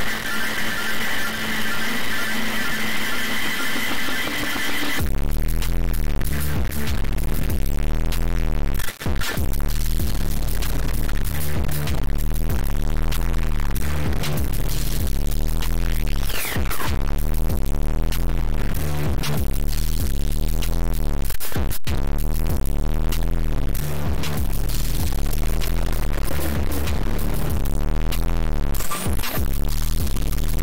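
Experimental electronic music made from plugin-processed dither noise played back from a DAW. It opens as a hissy noise texture with steady high whining tones. About five seconds in, a heavy, pulsing bass with a sweeping, phasing movement enters and runs on, with a falling whistle near the middle and a sharp click about two-thirds of the way through.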